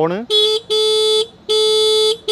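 Ather Rizta electric scooter's horn sounded in three presses: a short toot, then two steady blasts of about half a second each, all on one unchanging pitch.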